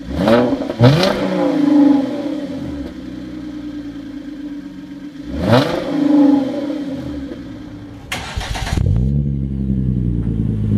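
2013 Hyundai Genesis Coupe 3.8's V6 on its stock exhaust, idling and blipped twice in quick succession near the start, then revved again about five seconds in, each rev falling back to idle. Near the end, another Genesis Coupe 3.8 engine is cranked, catches, and settles into a steady idle.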